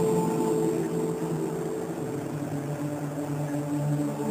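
Electronic music from a DJ set: held synthesizer chords with no drum beat, dipping slightly in loudness through the middle.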